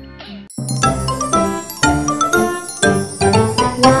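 A bright, tinkling intro jingle with chime-like notes, starting about half a second in after a brief silence.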